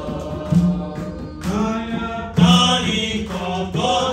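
A man leading a worship song on a microphone, singing in a chant-like style with long held notes and short breaks between phrases.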